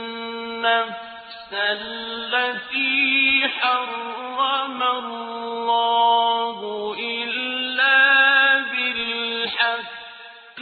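Quran recitation in Arabic: a single voice chanting melodically, with long held and ornamented notes and short pauses between phrases.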